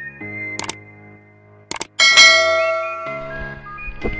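Intro-animation sound effects over background music: two quick click sounds, then about two seconds in a loud bright ding that rings out and fades.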